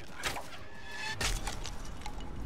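Soundtrack of a TV drama playing: background score with scattered short, sharp sound effects and a low hit a little past a second in.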